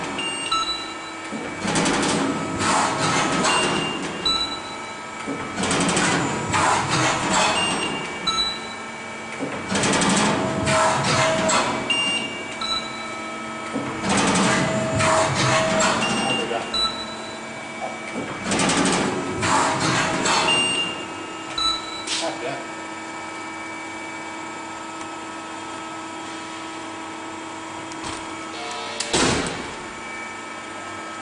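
Schiavi HFBs 50-25 press brake running with a steady hum. Louder, irregular noisy passages come roughly every few seconds.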